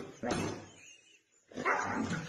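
Huskies vocalizing at each other in two short outbursts, one just after the start and another about a second and a half in.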